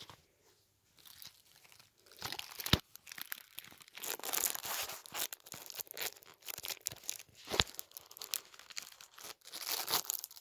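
Clear plastic wrapping on a CD case being torn and crinkled by hand. It starts after about two seconds of near quiet, then comes in crackling spells, with two sharp clicks standing out.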